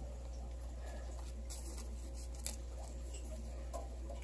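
Quiet handling noises: faint rustles and one light click about halfway through, over a steady low hum.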